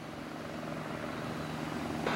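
Distant Helibras AS350 B3 helicopter approaching: the steady drone of its rotor and turbine, slowly getting louder.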